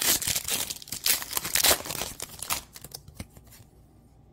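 Plastic trading-card pack wrapper being torn open and crinkled, a burst of rustling and tearing for about two and a half seconds that then dies away.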